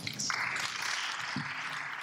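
Audience applauding, starting a moment in and easing off near the end.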